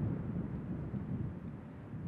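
Wind buffeting the microphone outdoors: a low, uneven rumble that rises and falls.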